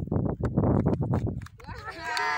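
Footballs being juggled on the feet: quick, irregular thuds of leather balls on boots. High-pitched children's voices start calling out near the end.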